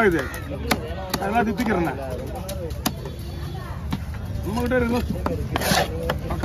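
A heavy fish-cutting knife scraping scales off a trevally and chopping on a wooden log block, giving a few scattered sharp knocks, with voices talking alongside.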